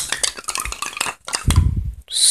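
A small snow globe shaken hard in the hand close to the microphone: a quick run of clicks and rattles, with a couple of low handling bumps about one and a half seconds in.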